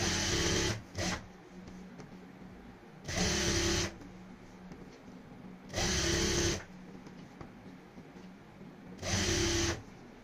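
Industrial sewing machine stitching a waistband strip onto fabric in short runs of under a second. There are four runs about three seconds apart, with a brief extra run just after the first, and a steady low hum between them.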